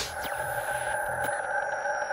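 Electronic logo-sting sound design: a steady synthesizer drone held under faint falling high glides, with a few light ticks.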